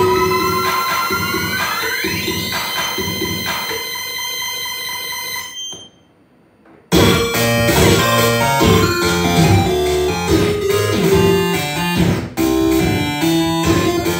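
Live electronic music from synthesizer gear and effects pedals: a held chord of tones glides upward and then fades out, dropping to near silence about six seconds in. About a second later a loud, dense, rhythmic electronic passage starts, with a brief dropout near the end.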